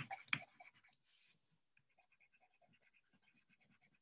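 Faint stylus scratching on a tablet screen as handwriting is written, with two light taps at the start and a brief hiss about a second in.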